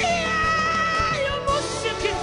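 A woman singing a Shona gospel hymn into a microphone over a live band. She holds one long high note for about a second, then moves into shorter notes, over a steady drum beat.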